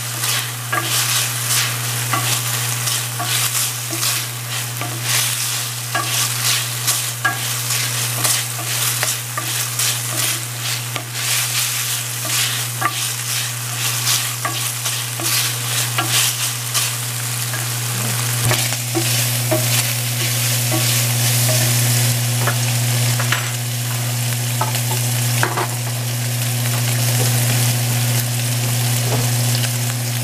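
Cubes of beef chuck sizzling as they fry in a large enamelled pan, stirred and scraped with a wooden spoon through roughly the first half, then mostly steady sizzling. A steady low hum runs underneath.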